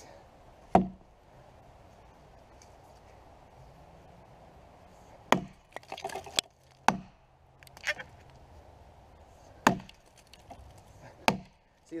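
Axe chopping into a downed log: one strike near the start, then after a pause a run of about six more strikes at uneven intervals, each a sharp chop into hard, dry wood.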